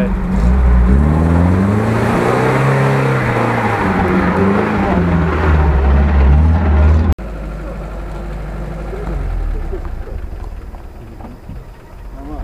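UAZ 4x4 engine revving under load as it drives through mud close by, its pitch rising and falling over several seconds. After a sudden cut about seven seconds in, the engine is heard quieter and further off, fading near the end.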